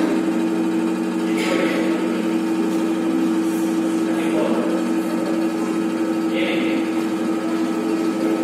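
Hydraulic pump of an FIE universal testing machine running with a steady hum while its load valve is opened to put tension load on the specimen, with a few brief soft hisses.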